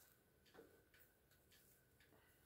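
Near silence, with a few faint ticks and rustles from a wig being worked onto a mannequin head by hand. The clearest tick comes about half a second in.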